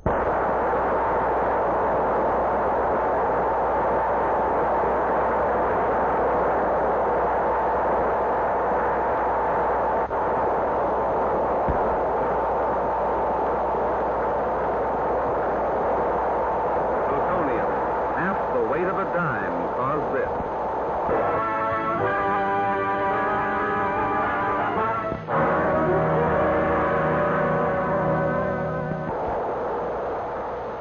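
Newsreel soundtrack for an atomic bomb detonation: a long, steady roar set off just after the firing command, with a held low drone under it. After about twenty seconds it gives way to dramatic orchestral music in sustained chords, with a brief break about halfway through the music.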